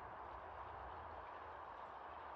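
Faint steady background ambience: a low hiss with a low rumble underneath and no distinct event.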